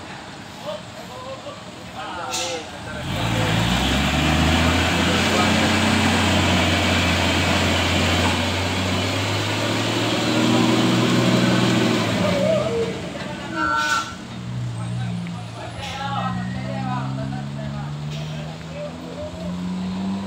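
Heavy truck's diesel engine working hard under load on a steep climb: its low note comes in about three seconds in and climbs slowly as the revs rise, with a loud rushing noise over it until about twelve seconds in. In the second half the engine keeps labouring with the revs rising again, with a few short sharp hisses or clicks.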